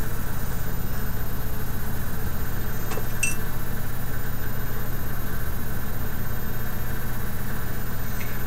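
Steady low background hum from a running machine, with one small click about three seconds in.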